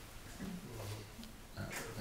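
A pause in talk: a man's brief, low, wordless hesitation sound about a second in, over quiet room tone.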